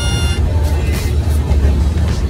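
Steady low rumble of a passenger train coach heard from inside, with a high held tone that stops about half a second in.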